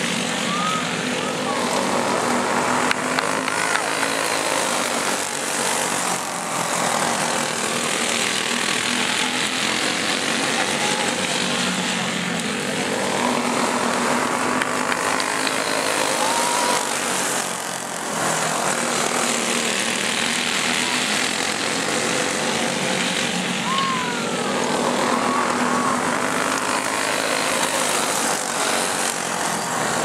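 Several go-kart engines racing on a dirt oval, their sound swelling and fading every few seconds as the pack goes around and passes close by.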